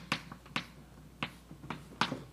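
Chalk tapping and scraping against a blackboard as symbols are written: a run of short, sharp clicks at irregular spacing.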